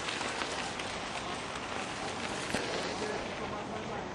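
Bicycle tyres rolling over a dirt and gravel track: a steady hiss scattered with small clicks from grit under the wheels.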